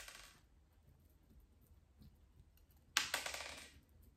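Small top-dressing stones clicking and rattling as fingers push them into place around succulents in a pot: a short rattle at the start, then a louder clatter of many small clicks about three seconds in.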